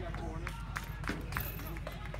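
Indistinct voices of soccer players and onlookers, with several short sharp clicks or knocks scattered through.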